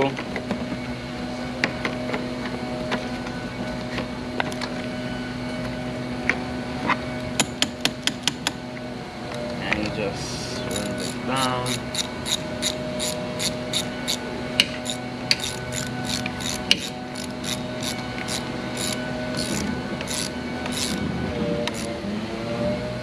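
Hand ratchet wrench clicking in short strokes as the negative cable clamp is tightened onto a car battery terminal: a brief run of clicks about a third of the way in, then a longer, regular run of about two to three clicks a second through the second half, over a steady hum.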